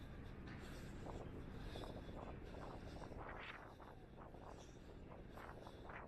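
Faint outdoor ambience: a low steady rumble of wind on the microphone, with a run of soft scuffs and handling noises, the strongest a little past the middle.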